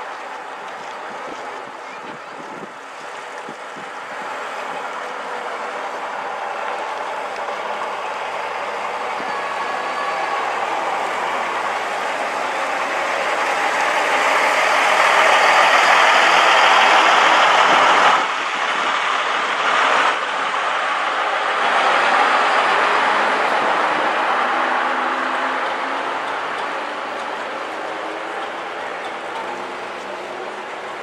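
Engine of a vintage Midland Red single-deck bus driving past close by, growing louder as it approaches. It is loudest as it passes, with a sudden dip partway through, then fades as the next bus comes up.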